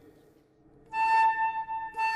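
Concert flute playing one steady held note, starting about a second in with a breathy attack. It demonstrates an embouchure in which the upper lip is rolled back to angle the air stream down into the flute rather than pressing the lips.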